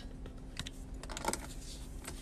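Fingers handling and tapping the phone that is recording, making a few light clicks close to the microphone.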